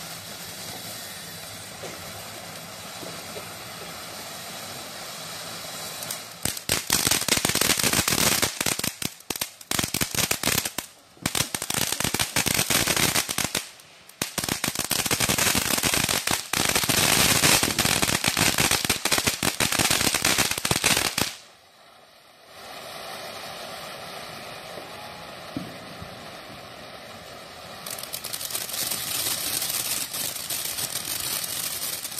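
Fireworks crackling: a loud, dense run of rapid crackles and pops starts about six seconds in and breaks off briefly twice. It stops abruptly about two-thirds of the way through, and steady background noise lies before and after it.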